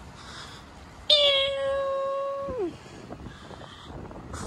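A man's voice doing an engine impression of a Ferrari V10: one long, steady high note held for about a second and a half, then dropping away in pitch.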